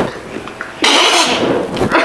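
A person's loud wordless vocal reaction, starting a little under a second in: rough and breathy, with a pitched edge, and no words.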